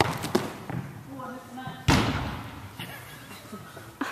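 A sharp knock at the start, then about two seconds in a heavy thud with a reverberant tail as a player's body lands on foam crash mats after going up for the ball.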